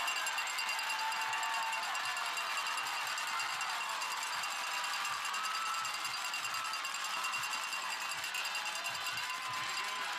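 Football crowd in the stands cheering and yelling during a play, with many voices shouting at once.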